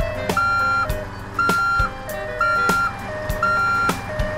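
Two-tone electronic siren or warning signal on a cartoon emergency vehicle, alternating a high and a low note about once a second. It plays over a low steady hum and regular clicks.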